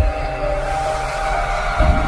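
Cinematic intro music: held synth tones, with a deep boom at the start and another near the end.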